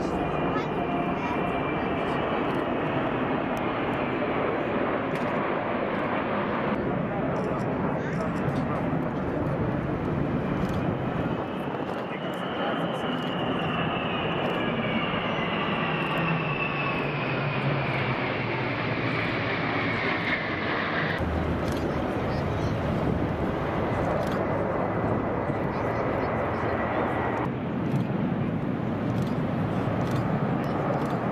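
Military jet aircraft flying over in formation: a continuous jet roar, with a high engine whine that slowly falls in pitch as the aircraft pass between about 12 and 21 seconds. The sound changes abruptly a few times.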